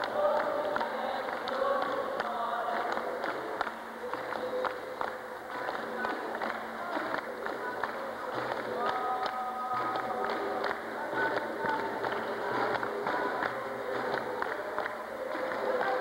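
Capoeira roda music: group call-and-response singing over steady handclaps and percussion, with a berimbau playing.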